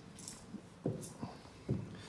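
Footsteps on a bare wooden subfloor: three soft thumps in the second half, with brief rustling before them.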